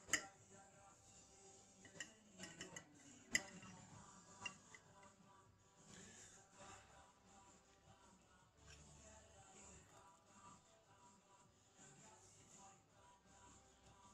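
Near silence, with a few faint clicks of a metal fork against the pasta dish in the first few seconds as the spaghetti is twirled up and eaten.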